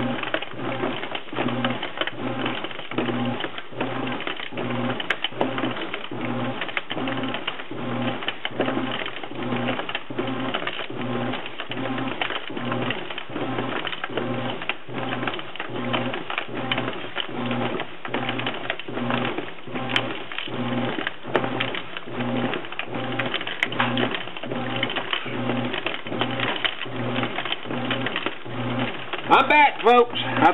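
Whirlpool WTW4950XW1 top-load washer running its wash action: the motor hum pulses in an even rhythm of about one and a half beats a second as the low wash plate drives the load back and forth. The suds-filled load is washed in little water.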